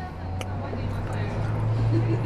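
Close-miked chewing of a lettuce-wrapped burger, with a single sharp mouth click about half a second in, over a steady low hum.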